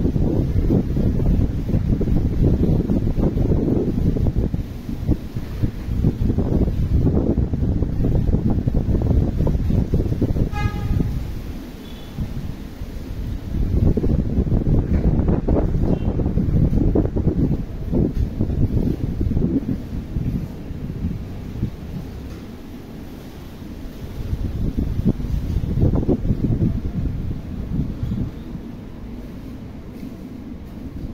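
Wind buffeting the microphone in gusts, a loud low rumble that eases off for a while around the middle and again near the end. A brief faint high toot sounds about ten seconds in.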